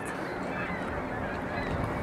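Faint calls of distant birds over the river, heard over a steady outdoor background noise.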